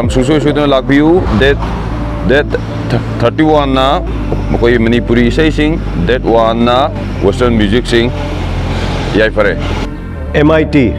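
A man talking in Manipuri, over a steady low rumble of road traffic.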